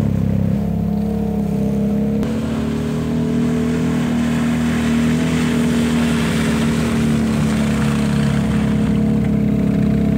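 ATV engines running steadily as four-wheelers drive through mud, the engine pitch stepping up a little about two seconds in.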